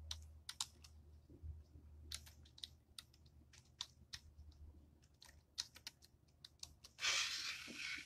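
Faint, irregular clicks of typing on a computer keyboard, with a brief burst of noise about a second long near the end.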